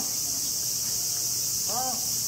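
A steady, high-pitched chorus of cicadas drones throughout. A short call that rises and falls in pitch cuts through it twice, once right at the start and once near the end.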